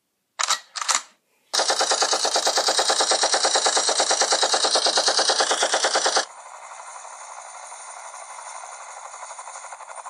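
Machine-gun fire sound effect: two short bursts, then one long burst of rapid shots lasting about five seconds. It gives way to a quieter, fast flutter of a helicopter rotor sound effect.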